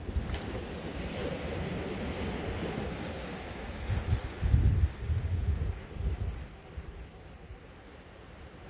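Wind buffeting the microphone over the wash of surf on rocky shore, with the heaviest gusts a little past halfway and easing off near the end.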